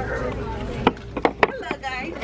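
Stiff picture plaques knocking against one another as one is slid back into a stack on a store shelf, a quick run of short, sharp clacks starting about a second in.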